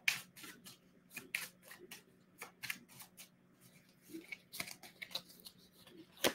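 Tarot cards being shuffled by hand: a run of soft, irregular card flicks and taps.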